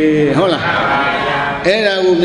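A Burmese Buddhist monk's voice chanting a Pali recitation, drawing out a long syllable whose pitch bends and wavers in the middle.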